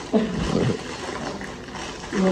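A person's short vocal groan, falling in pitch and lasting about half a second near the start.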